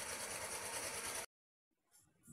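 Steady machine noise with a hiss and a fast low pulsing, like an engine running, that cuts off suddenly just over a second in.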